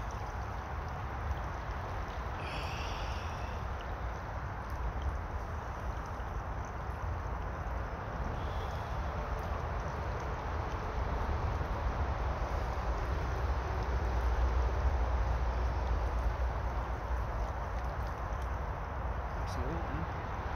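Shallow stream running: a steady rush of flowing water, with a low rumble underneath that swells for a few seconds in the middle.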